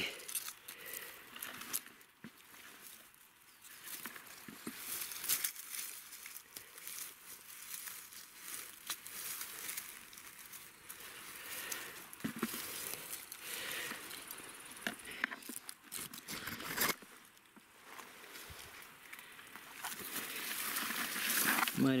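Dry grass and undergrowth rustling and crackling in irregular bursts, with small sharp snaps, as mushrooms are cut with a knife and picked from the grass.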